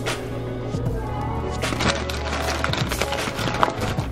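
Background music, with a knife knocking repeatedly on a wooden cutting board as fresh green beans are chopped, the sharpest knocks coming in the second half.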